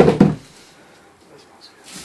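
A heavy disc weight set down on a wooden board, a loud double thud at the very start.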